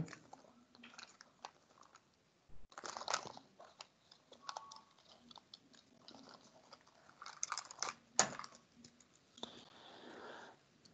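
Faint, scattered clicks and crackling rustles of small objects being handled at a desk, picked up by a video-call microphone. The loudest crackles come about three seconds in and again just after eight seconds.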